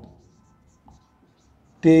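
Felt-tip marker writing on a whiteboard: faint, short, high scratchy strokes between spoken words, with a small tap about a second in.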